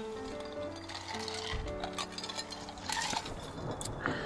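Background music of soft, sustained chords that change about a second and a half in.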